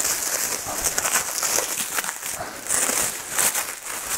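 Clear plastic wrapping crinkling and crackling irregularly as it is pulled and worked off a tightly wrapped package by hand.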